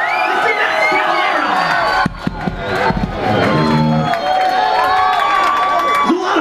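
Club concert crowd cheering and yelling, many voices shouting over one another. About three seconds in, a short low pitched note sounds for about a second beneath the shouting.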